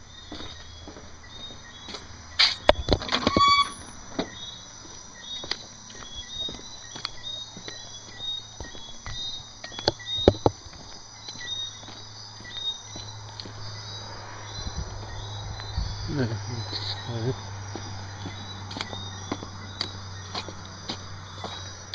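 Night insects chirping in a fast, steady, high pattern over a low hum. Several sharp knocks and a short squeak that rises in pitch come about two to three and a half seconds in, and another knock about ten seconds in.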